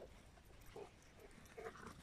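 Near silence: quiet outdoor air, with two faint short sounds, one just under a second in and one near the end.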